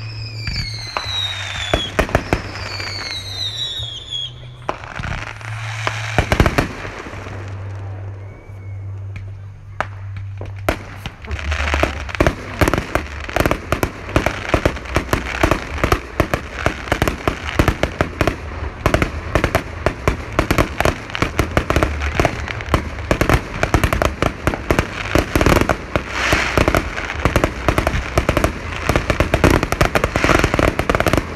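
Fireworks display: in the first few seconds whistling shells rise with falling whistles among scattered bangs. From about eleven seconds in comes a dense barrage of rapid bangs and crackling that keeps going.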